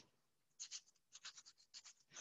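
Faint, quick strokes of sandpaper rubbing by hand on a small disc, about five or six strokes a second, starting about half a second in.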